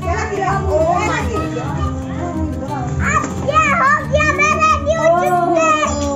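Children's excited voices and shouts, without clear words, over background music with a steady low beat.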